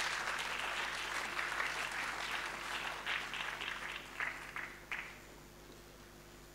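Audience applauding. The applause thins out in the last couple of seconds, with a few separate claps standing out before it dies away.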